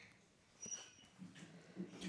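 Faint handling noise as an acoustic guitar is lifted off and set aside: a few soft knocks and rustles spread over the two seconds, over near-silent room tone.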